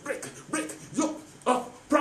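A man's voice shouting one short word over and over, about two shouts a second: the repeated command "Break!".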